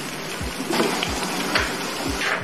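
Spiced coconut-milk sauce sizzling and bubbling in a pan as duck rendang cooks. A soft low beat of background music thuds about twice a second underneath.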